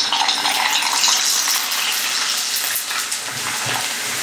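Prawn crackers deep-frying in very hot oil in a wok: a steady sizzle as the crackers puff up.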